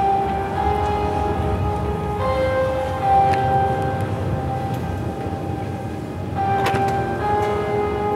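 Recorded music with held, bell-like chime notes that change every second or two over a continuous low bass, with a few sharp percussive hits near the end.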